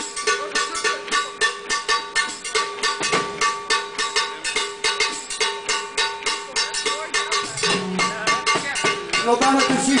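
Live electric band playing: a steady, fast percussion beat of about four to five hits a second over held electric-guitar notes. About three-quarters of the way through a lower note joins in, and singing starts near the end.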